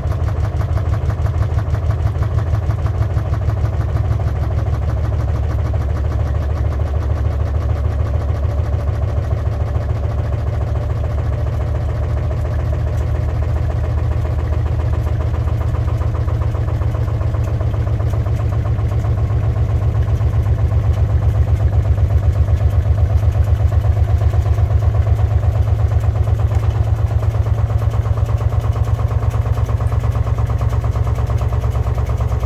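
Beko AquaTech front-loading washing machine spinning its drum, loaded with a heavy hoodie. It makes a strong, steady low hum with a fast regular pulse, which grows somewhat louder about two-thirds of the way through.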